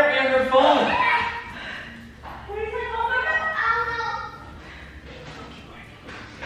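High-pitched voices calling out in alarm in two stretches, then quieter near the end.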